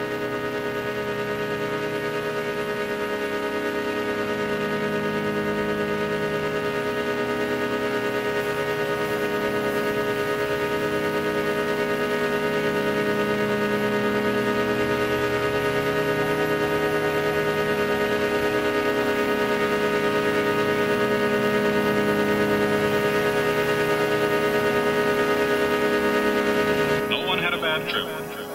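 Progressive techno breakdown: a sustained synth pad holding a chord over a slowly shifting low layer, with no beat. It swells slightly, and a brighter new section cuts in near the end.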